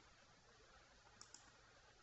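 Near silence: room tone, with two faint, quick clicks a little past halfway through from a computer keyboard or mouse in use while editing code.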